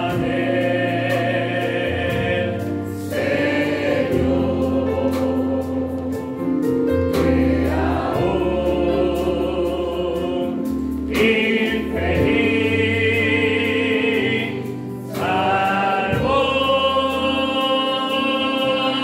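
A man sings a slow Christian chorus through a microphone and PA in long held notes, phrase by phrase, to electric keyboard and bass guitar, with other voices singing along.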